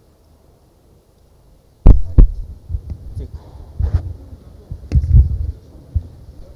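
A run of heavy, low thumps picked up through the stage microphones, starting about two seconds in, the first two loudest and a third of a second apart, with a few more up to near the end.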